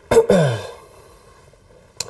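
A man's short, sigh-like vocal sound falling in pitch in the first half second, followed by quiet room tone.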